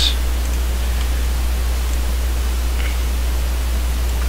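Steady low hum and even hiss from the recording's microphone line, with a few faint clicks from a computer mouse.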